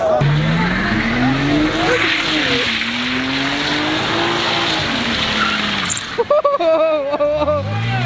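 A car engine held at high revs while the tyres spin and screech through a smoky burnout donut, the revs rising and falling. Around six seconds in the revs drop briefly, then climb again near the end.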